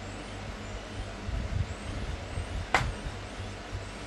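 A plastic spatula stirring a thick bulgur and mince mixture in a stainless steel pot: irregular dull low thuds, with one sharp click of the spatula against the pot about three quarters of the way through.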